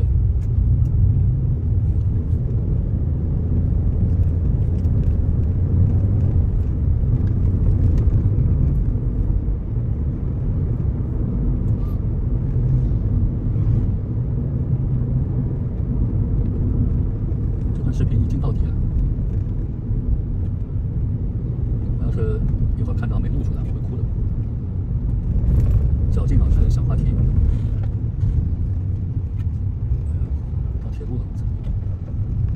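Car cabin noise while driving: a steady low rumble of engine and tyres on the road, heard from inside the car, with a few faint brief higher sounds in the second half.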